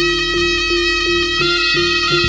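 Live Javanese jaranan ensemble music: a reed pipe holds a long note over an even beat of pitched gong strikes, about three a second.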